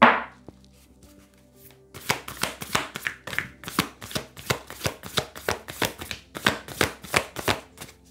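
A deck of tarot cards being shuffled by hand: a quick run of short card slaps, about four a second, starting about two seconds in. A single loud knock comes at the very start.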